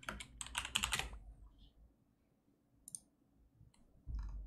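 Typing on a computer keyboard: a quick run of keystrokes in the first second or so, then two single clicks near the end.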